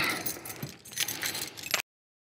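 A man's short laugh, then light jangling and rattling that cuts off suddenly near the end.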